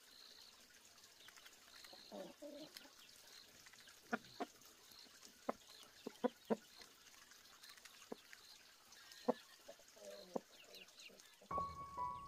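Chickens pecking corn kernels off concrete: scattered sharp taps of beaks on the slab, with a few soft clucks. Music comes in just before the end.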